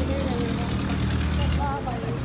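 Truck engine running with a steady low hum that drops away shortly before the end, with voices in the background.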